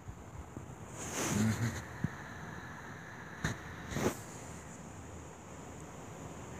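Close rustling with a few sharp clicks, the loudest two about half a second apart near the middle, over a steady background hiss.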